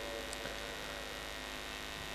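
Steady electrical mains hum, a low constant tone with a stack of higher overtones.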